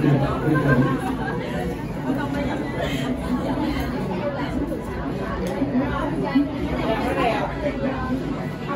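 Chatter of many people talking at once, with no single voice standing out, a little louder in the first second.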